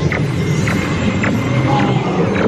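Ride-car and soundtrack noise inside the Buzz Lightyear's Space Ranger Spin dark ride: a steady low rumble with short, sharp sounds about every half second.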